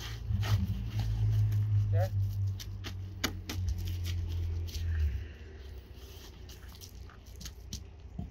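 Synthetic roofing underlayment rustling and crackling as it is handled and smoothed by gloved hands, with scattered sharp crinkles and clicks. A low steady hum runs underneath and stops about five seconds in.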